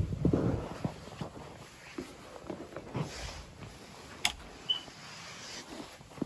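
Footsteps and handheld-camera handling knocks, soft and irregular, with a sharp click about four seconds in and a brief high chirp just after it.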